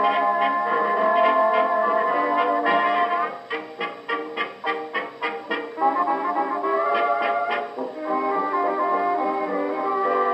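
A 1920s jazz dance orchestra, led by brass, plays from a 78 rpm shellac record on a Victor Orthophonic Victrola Credenza with a medium tone needle. The sound is thin, with no deep bass or high treble, as an acoustically recorded disc played acoustically would be. About a third of the way in, the band breaks into short separate staccato hits for a few seconds, then the full ensemble returns.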